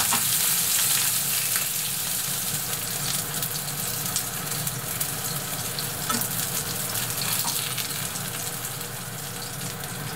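Horse mackerel fillets frying flesh-side down in a thin layer of vegetable oil in a nonstick frying pan: a steady sizzle with fine crackling, slowly getting quieter.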